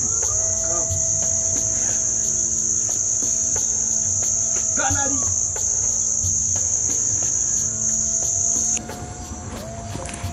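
Crickets chirring at night, one steady, high, unbroken trill that is the loudest sound. It cuts off suddenly about a second before the end.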